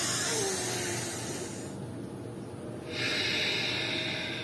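A woman's deep, deliberate breathing during a breathing exercise: a long airy breath of nearly two seconds, then a pause, then a second breath about three seconds in.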